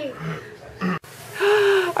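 A person's breathy gasp, in the second half, after a short low voice sound and a momentary break in the audio.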